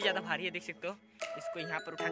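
A man speaking Hindi over background music with chime-like notes.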